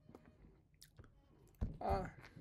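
Scattered small mouth clicks and lip smacks from a person signing, then a brief voiced grunt near the end.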